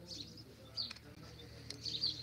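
Small birds chirping: short, high chirps repeated throughout, the loudest near the end.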